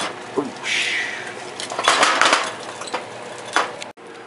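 Pots and dishes being shifted by hand: several short scrapes and knocks, the loudest about two seconds in, with a sharp clink near the end.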